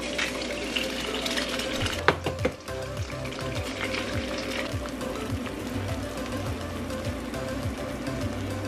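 Eggs sizzling as they fry in a nonstick skillet, with a few sharp cracks about two seconds in as another egg is cracked open over the pan. Background music with a repeating bass line plays throughout.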